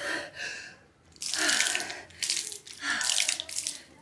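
Water sloshing in an inflatable cold-plunge tub and running over its side as a person sinks into the icy water. There are three loud rushing bursts in the second half.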